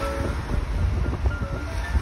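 Low, uneven rumble of a car driving, heard from inside the car, with background music over it.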